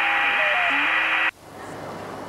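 A loud burst of static-like electronic hiss with faint steady and stepping tones in it. It cuts off suddenly just over a second in, leaving a quieter hiss.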